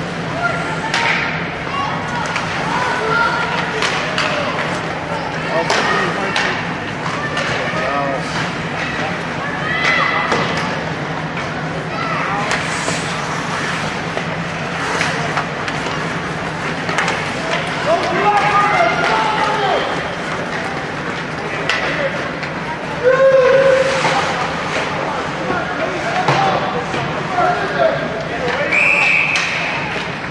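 Ice hockey game sound: voices shouting from the bench and stands, over sticks and puck clacking sharply on the ice. A steady low hum runs underneath. A short high whistle blast comes near the end.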